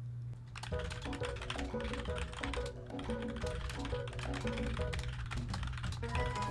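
Rapid computer-keyboard typing, a quick run of keystroke clicks that starts under a second in, over background music with a short repeating melody.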